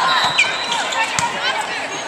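A volleyball is struck once, a sharp smack about a second in, over the steady talk and calls of spectators in a large gymnasium.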